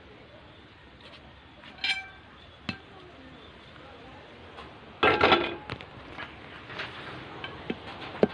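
Kitchenware being handled: scattered light clicks and clinks, with a louder short clatter about five seconds in.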